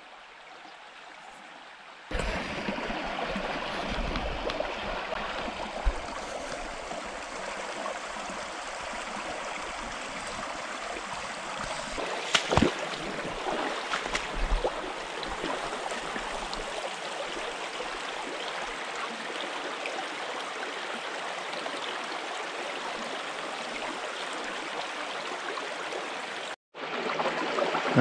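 Small rocky creek running over stones in a steady rush and babble of water. It is quieter for the first two seconds, then louder for the rest, with a few sharp clicks, the strongest near the middle.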